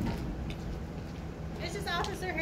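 A brief, high-pitched voice sound that falls in pitch near the end, over a steady low rumble, with a short knock at the very start.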